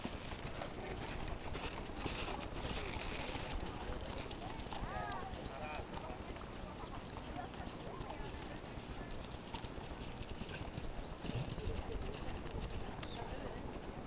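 Hoofbeats of a horse cantering on a sand arena: soft, dull thuds in a running rhythm.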